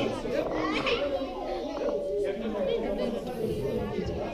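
Children's voices chattering and playing together in a large room, a steady hubbub with no single loud voice.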